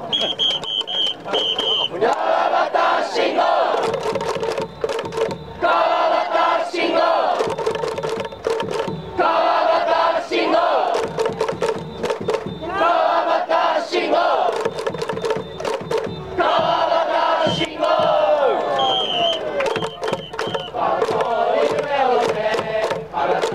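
A baseball cheering-section crowd chanting in loud shouted phrases, each a second or two long, punctuated by sharp rhythmic beats. It is a chant for the batter, leading into his cheering song. A high held tone sounds in the first two seconds.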